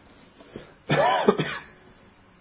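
A man clearing his throat with a short voiced cough about a second in, lasting about half a second.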